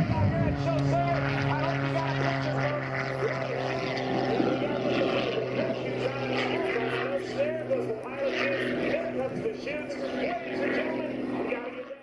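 Propeller engine of an MXS aerobatic plane running with a steady drone, over the rushing noise of a jet-powered school bus racing down the runway. Voices carry over it, and the sound fades out at the very end.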